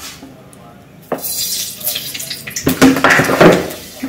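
Dishes and kitchen utensils clattering as they are handled on the counter, beginning with a sharp knock about a second in.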